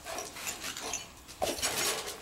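Young red-nose pit bull making a few short vocal sounds, the loudest near the end.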